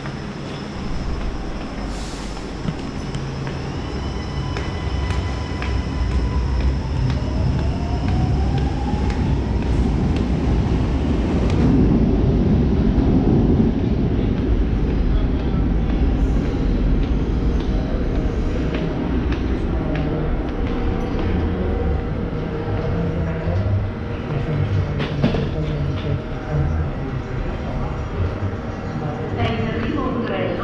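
Milan Metro train rumbling through an underground station, the low rumble building to its loudest about twelve seconds in and staying loud. A rising whine comes a few seconds before the peak.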